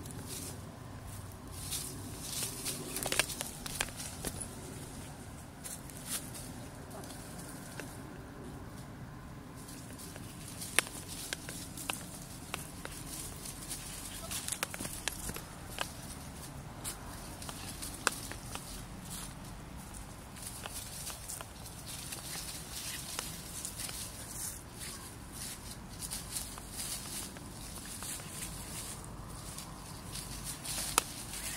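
Two small dogs play-fighting and scampering through dry leaf litter: scuffling and rustling with many scattered sharp crackles, and low indistinct voice-like sounds.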